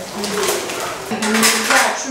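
Metal kitchenware scraping and clinking during food preparation, with a metal box grater in use. There are louder rasping sounds about half a second in and again at about a second and a half.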